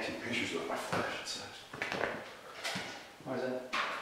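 People talking in a room; speech only, with no machine running.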